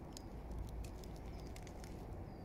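Light rustling and scattered small clicks as a hand moves through a clump of velvet shank mushrooms and the moss around them, over a low steady rumble.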